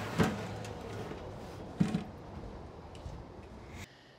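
A clear plastic food-safe container full of brine being handled: a sharp knock just after the start and a duller thump a little before two seconds, over faint background noise that fades away.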